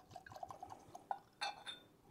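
Bourbon poured from a glass bottle into a tasting glass: a faint gurgling trickle, then a couple of glass clinks about a second and a half in.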